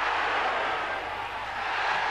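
Stadium crowd cheering in a steady roar as the home side scores a goal.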